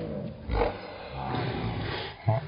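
A boy shouting in celebration after a made basketball shot, in drawn-out yells, with a dull thump about half a second in.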